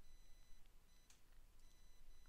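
Near silence: room tone with a faint, steady high-pitched electronic whine that drops out for about half a second in the middle.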